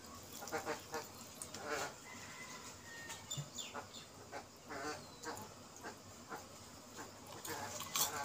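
Domestic waterfowl calling in the background: short, fairly faint honking calls, about two a second.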